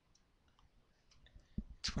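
Faint clicks and rustle of trading cards being flicked through by hand, with a couple of soft knocks near the end.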